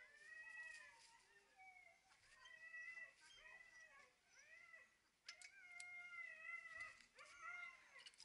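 A harnessed team of Siberian huskies and malamutes whining and yowling, several high, wavering calls overlapping throughout, stronger from about five seconds in: sled dogs eager to set off.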